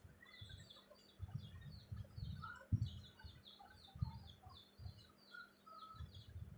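Wooden spatula stirring chicken and cabbage in a pot, giving soft irregular knocks, one sharper knock near the middle. Birds chirp rapidly throughout, with a few lower calls.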